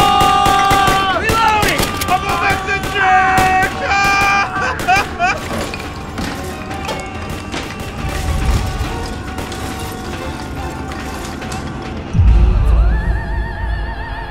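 A rapid volley of handgun shots over a film score, dying away after about five seconds while the music carries on. Near the end a deep boom hits and a sustained singing voice with vibrato comes in.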